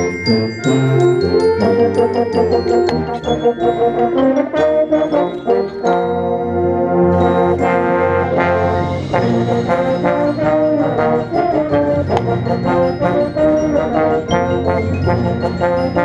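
Concert band music, with the bass trombone loud and close over the brass and the rest of the band. About six seconds in the band settles on long held notes, and a bright high shimmer joins them soon after.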